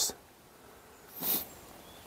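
A single short sniff, a quick breath drawn in through the nose, about a second in, against quiet room tone.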